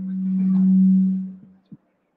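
Low-pitched feedback tone from a public-address system as a handheld microphone is passed between panellists: one steady hum-like note that swells to a peak and fades out over about a second and a half, then a brief knock from the microphone being handled.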